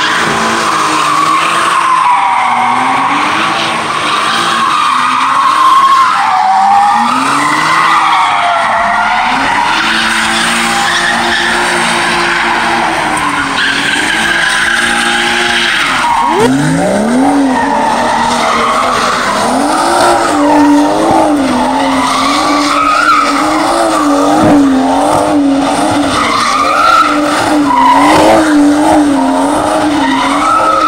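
Cars doing donuts: a car engine revving hard while the rear tyres squeal and skid without let-up. About halfway through, the engine note sweeps up steeply, then the revs rise and fall in quick, regular waves as the throttle is worked to keep the tyres spinning.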